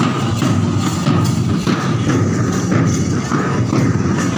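Drums and large hand cymbals beaten together by a marching procession: a dense, continuous rhythm of many hits with cymbal clashes over the top.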